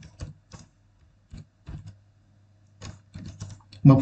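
Computer keyboard typing: irregular single keystrokes spaced apart, then a quicker run of keystrokes about three seconds in.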